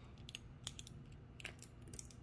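A handful of faint, scattered small clicks from a wristwatch being handled, its strap buckle or clasp being worked.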